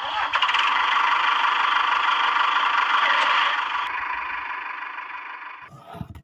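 Small electric motor of a homemade toy tractor whirring steadily as the tractor drives. It starts suddenly and fades away over the last couple of seconds.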